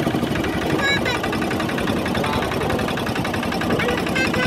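A small motorboat's engine running steadily under way, with a fast, even low chugging.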